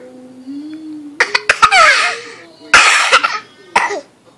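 Baby laughing in loud, breathy bursts: a long peal starting just over a second in, a second one soon after, and a short one near the end.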